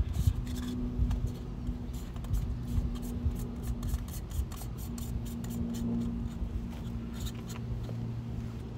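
Screw-in camera lens filters (ND, polarizer and step-up ring) being handled and threaded together: a run of small clicks and scraping of the metal filter rings, over a low rumble and a steady low hum.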